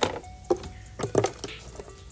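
Handling clatter: a sharp click at the start, then a few knocks about half a second and a second in, from metal hair clippers being set down on wood and a wooden drawer being pulled open.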